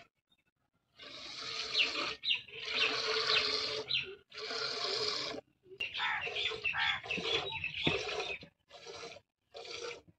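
Milk squirting into a steel pail as a cow is milked by hand. The spurts run almost together at first, then come one by one, a little more than one a second, near the end.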